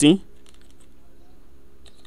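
A few faint computer-keyboard keystrokes, typing code, over a low steady hum.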